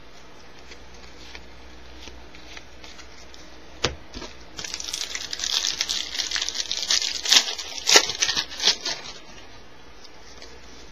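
A baseball-card pack wrapper being torn open and crinkled: a single click a little under four seconds in, then about four seconds of crackling, rustling wrapper noise with several sharp crinkles.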